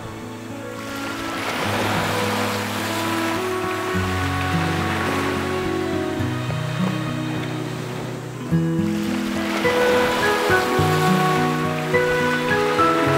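Slow background music with held notes over small sea waves washing onto a beach. The surf swells up twice, about a second in and again past the middle.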